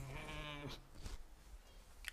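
A man's short, closed-mouth nasal hum of doubt, a wavering 'mmm' held for well under a second, followed by faint room noise.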